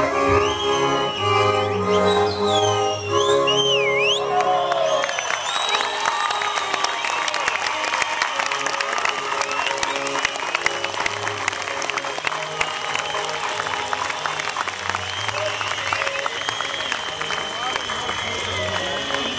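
A folk string band with fiddles plays its closing bars while whistles glide over the top, stopping about five seconds in. A crowd then applauds steadily, with shrill whistling and cheering over the clapping.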